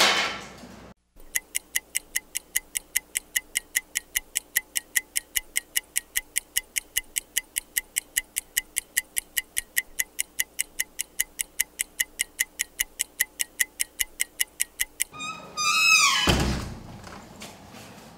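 A steady, fast ticking like a clock, about four ticks a second, added as an effect over the edit. Near the end it gives way to a falling swoosh and a low boom.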